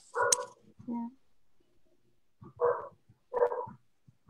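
A small dog barking: a few short, separate barks.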